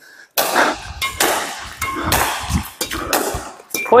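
Badminton rackets striking shuttlecocks in quick succession during a multi-shuttle cut-shot drill: several sharp hits, one every half second or so.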